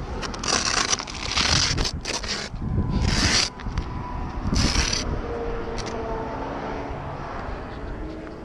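Handling noise of a hand-held camera: rubbing and scraping bursts on the microphone, about four in the first five seconds, then quieter.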